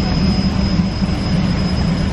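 Water main cleaning equipment running with a loud, steady low drone, a thin high whine running above it.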